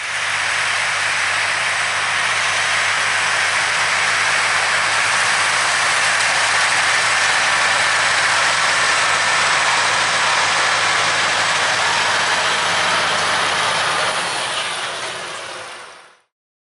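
A John Deere four-wheel-drive tractor's diesel engine running steadily under load as it pulls a field cultivator through worked ground, a low even drone under a broad rushing noise. The sound fades out over the last two seconds.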